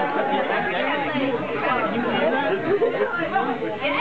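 Chatter of several people talking over one another at once, with no single voice standing out.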